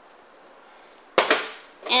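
Two quick, sharp knocks of something hard striking a hard surface, a little over a second in, against quiet kitchen room tone.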